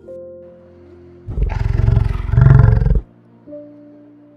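A large animal's deep, rough call in two swells, lasting about a second and a half from just over a second in, the loudest thing here. Soft background music plays under it.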